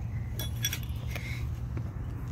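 A few light metallic clinks and jingles from metal hand tools being handled, bunched about half a second to a second in, over a low steady background rumble.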